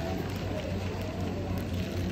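Steady low hum of an airport terminal, with faint background voices.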